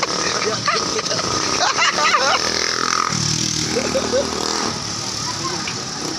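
People talking, with a motorcycle engine running close by from about three seconds in.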